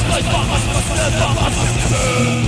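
Loud, lo-fi demo-cassette recording of death/thrash crossover metal: distorted guitars and fast drums packed into a dense wall of noise, with shouted vocals over it. Right at the end the band switches to a riff of held notes.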